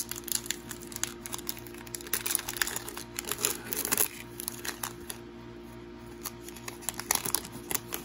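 Foil wrapper of a trading card pack crinkling and tearing as it is opened and the cards are slid out. The crackle is dense in the first half and sparser toward the end, over faint background music.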